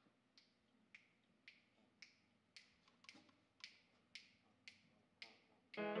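Faint, evenly spaced finger snaps, about two a second, counting off the tempo for a jazz tune; just before the end the quintet comes in, a saxophone's notes up front.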